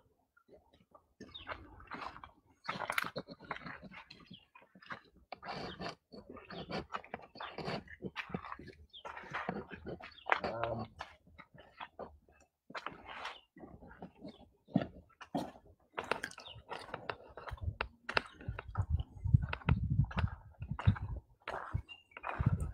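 Footsteps crunching irregularly on a gravel and dirt path, with scattered clicks and rustles from the handheld camera.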